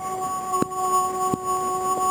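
A sumo yobidashi singing out a wrestler's ring name in the traditional drawn-out chant, holding one steady high note. Two short clicks sound under it.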